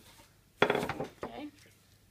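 A metal baking tray knocking once against the countertop: one sudden loud clatter about half a second in that dies away within half a second.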